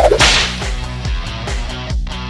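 A short whoosh sound effect at the start, marking the cut to a still photo, followed by background music with a steady beat.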